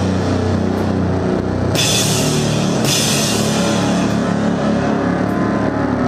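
Heavy sludge/grindcore played live by a bass-and-drums duo: a thick, distorted bass sound with drums, loud and dense. Crashing cymbals come in just under two seconds in and wash on for a couple of seconds.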